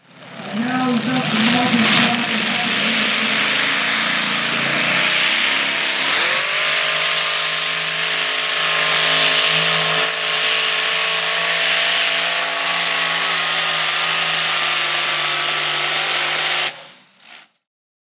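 Modified pulling tractor's Hemi V8 engine running at full throttle under load on the track. About six seconds in its pitch rises, then it holds steady at high revs and cuts off suddenly near the end.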